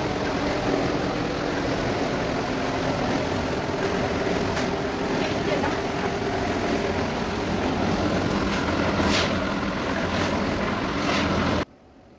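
Steady roar of a stand-type LPG gas burner heating a large pot, with a few short scrapes of a metal spatula against the pot. The sound cuts off abruptly shortly before the end.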